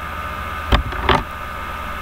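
Steady electrical hum and hiss on a computer microphone, broken by two short sharp sounds close together about three-quarters of a second and a second in.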